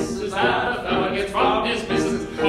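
Two men singing a show-tune duet with piano accompaniment.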